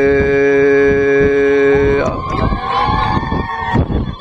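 A man's voice chanting through a microphone, holding one long steady note that breaks off about halfway, followed by a rougher, wavering vocal stretch.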